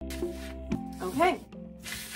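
Background music with plucked-string notes that stops just under a second in, over the rustle of paper pattern pieces sliding on a cutting mat, with a brief spoken word about a second in.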